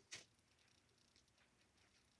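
Near silence: room tone with a few faint soft ticks from hands pinching a ball of modelling clay.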